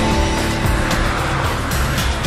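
Busy city street traffic noise, cars passing with a dense street hum and scattered clicks, mixed with background music.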